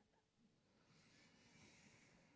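Near silence, with a faint, soft breath out in the second half.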